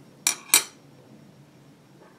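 Two sharp metallic clacks about a quarter second apart, the second louder with a short ring: small craft scissors being set down on the hard work surface.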